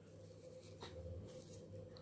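Faint rustling, with a few light ticks, as granular NPK fertiliser is sprinkled by hand onto the potting soil of a small plant pot.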